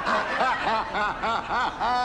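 A man laughing at his own pun: a quick run of short cackling 'ha-ha' syllables, about six or seven a second.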